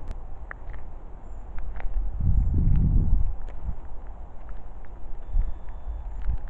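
Footsteps on a gravel track with scattered small crunches, and a louder low rumble on the microphone lasting about a second from roughly two seconds in.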